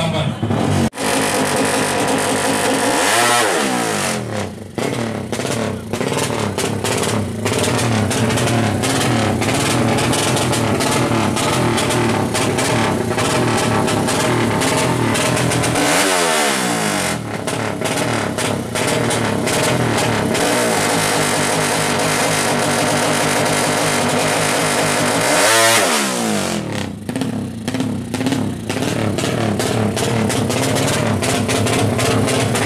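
Drag-race motorcycle engine revved hard and held high at the start line, with the revs dropping and climbing straight back three times.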